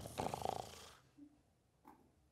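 A man's rough, rasping vocal noise, growl-like and without words, lasting about a second and fading out. Near silence follows, with a faint click near the end.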